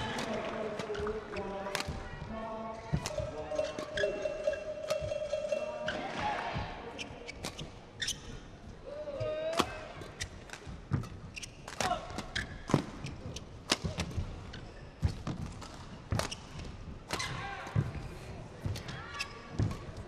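Badminton rally: rackets striking the shuttlecock back and forth in sharp, irregular hits, with court shoes squeaking on the court mat during the lunges.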